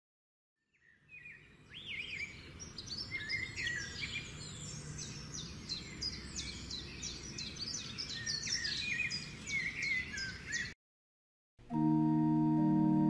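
Several birds chirping and singing together over a low steady background rumble. It starts about a second in and cuts off suddenly near the end, and held instrumental notes begin just before the end.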